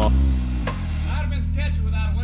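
Can-Am X3 side-by-side's three-cylinder engine idling steadily, with one sharp click about two-thirds of a second in.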